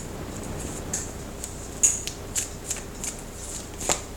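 Tarot cards being handled: a few short, light flicks and slides as cards are drawn from the deck and laid down on a wooden table.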